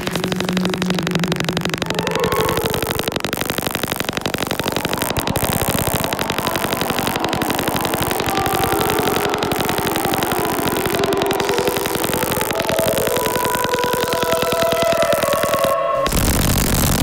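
Experimental electronic music: a dense, rapid glitchy buzzing pulse with short synthesized tones stepping about in pitch over it, and a brief dropout near the end.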